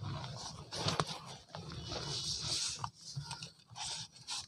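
Dry cement crumbling and pouring from hands onto a heap of cement powder: soft hissing in uneven waves, with a few small crunchy clicks.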